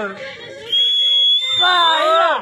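A single high, steady whistle, rising slightly in pitch, starts about two-thirds of a second in and is held for over a second. Near the end a voice shouts over it with a falling pitch.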